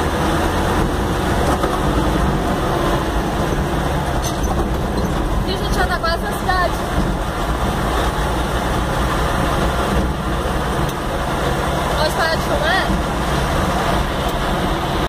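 Vehicle engine and road noise heard from inside the cab while driving in rain: a steady low rumble with a hiss. Brief pitched, wavering sounds come about six seconds in and again near twelve seconds.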